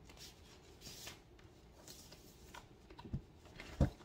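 Paper and cardboard rustling as a vinyl record's large printed insert is leafed through beside its gatefold sleeve, with a few light ticks and two soft low thumps near the end.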